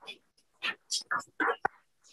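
Faint, quiet speech or whispering in a short pause between speakers, in a few brief fragments about midway through. A single sharp click follows near the end.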